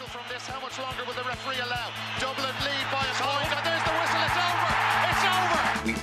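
Podcast theme music with a steady beat, with excerpts of hurling match commentary mixed in; the sound grows fuller and louder from about halfway through.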